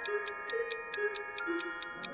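Clock-ticking timer sound effect, about five ticks a second, over soft background music with a slow melody.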